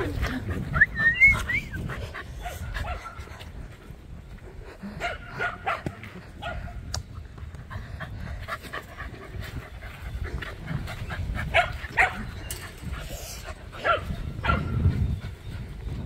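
A dog's short, wavering high whine about a second in, then scattered short barks and other dog noises.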